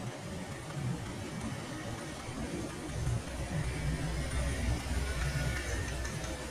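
Street traffic of motorbikes and a car driving past, with a low engine rumble that builds from about three seconds in as a vehicle passes close.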